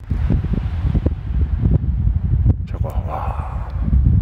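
Wind at the canyon rim: a faint, even rushing of distant wind from the canyon, under a louder, steady low rumble of gusts buffeting the microphone.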